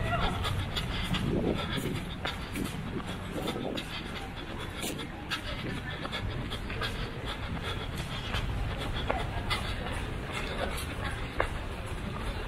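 A runner breathing hard close to the microphone while running, with the irregular footfalls of many runners on pavement.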